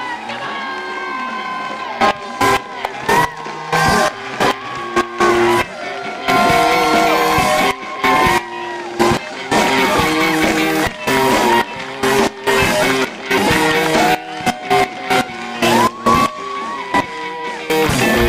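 Band music led by guitar, with a steady beat of sharp drum strokes under changing melody notes.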